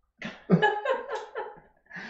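A person laughing in a run of short, choppy bursts that start about half a second in and stop shortly before the end.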